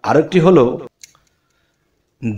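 A man's voice speaking briefly, then a faint click and about a second of dead silence.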